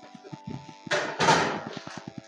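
A plastic bag of lettuce rustling in a short burst about a second in, over background music with steady tones and an even low pulse.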